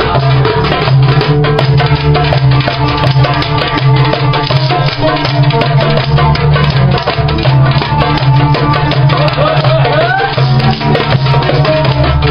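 Live music with a hand drum played fast with the hands, dense quick strokes over a steady low bass line, and a few sliding higher notes about ten seconds in.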